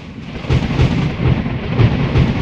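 Sound effect of a deep, uneven thunder-like rumble over a steady rain-like hiss.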